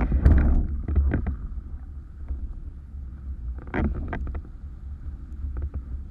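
Wind buffeting the microphone of a camera mounted on a windsurf sail while sailing in gusty conditions: a steady low rumble, with bursts of sharp crackles and knocks in the first second and again about four seconds in.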